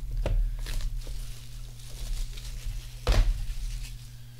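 Hands handling and opening a trading card box's packaging: light crinkling and taps, with one louder crinkle or knock about three seconds in. A steady low hum runs underneath.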